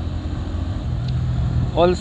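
Bajaj Pulsar P150 single-cylinder motorcycle engine running steadily while riding, under a low rumble of wind and road noise on the microphone.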